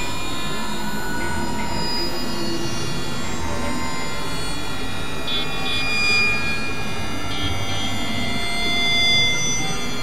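Dense experimental electronic mix of several overlapping sustained tones and drones over a noisy bed, steady in level, with two brief swells about six and nine seconds in.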